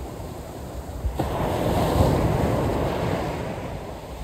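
Sea surf washing up a beach as a wave comes in, swelling about a second in and easing off toward the end.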